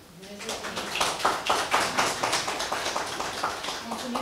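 A small audience applauding in a room: many hands clapping quickly and unevenly, with a few faint voices underneath.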